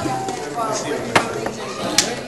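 Indistinct chatter of people talking in a room, with one sharp tap a little over a second in.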